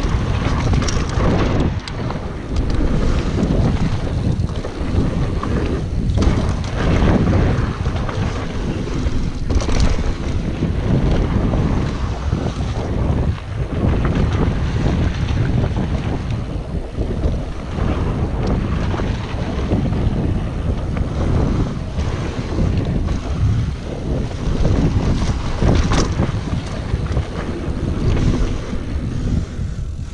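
Wind buffeting the microphone of a mountain bike's point-of-view camera on a fast descent, over the rumble of tyres on dry dirt and rock singletrack. Frequent sharp clatters and knocks run through it as the bike rattles over bumps.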